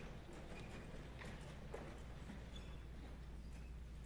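Many people's footsteps on a hollow wooden stage floor: scattered, irregular faint knocks as a group walks across, over a low steady hum.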